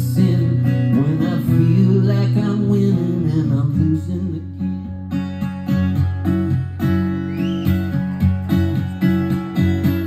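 Solo acoustic guitar amplified live through a PA, playing an instrumental passage between sung lines: held, ringing chords at first, then steady strummed strokes about twice a second from about halfway in.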